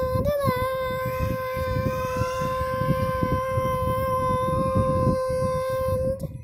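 A person's voice holding one long sung note, steady in pitch, with a slight wobble just after it starts. A low rumble of microphone handling noise runs underneath.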